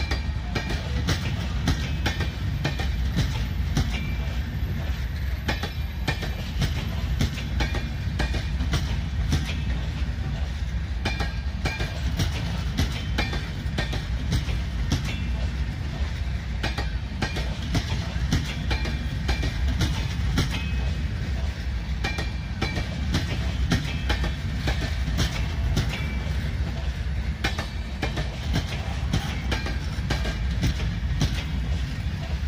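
Passenger train coaches rolling slowly past, their wheels clicking over rail joints in an irregular clatter above a steady low rumble.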